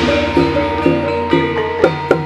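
Live jaran kepang dance music: pitched percussion struck about twice a second over a steady low hum, with a crash from just before fading away in the first half second.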